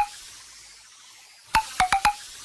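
Short electronic sound-effect blips: one at the start, then about one and a half seconds in a quick run of four sharp clicky beeps, each with a brief pitched tail, over a faint fading hiss.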